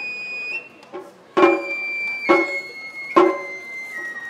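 Matsuri-bayashi Japanese festival music: a shinobue bamboo flute holds high notes that step down in pitch, over taiko drum strikes about once a second.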